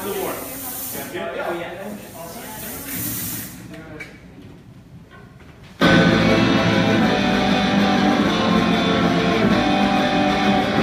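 A fog machine hissing over voices for the first few seconds, then a brief lull. About six seconds in, a live rock band comes in all at once with electric guitars, bass and drums, loud and steady.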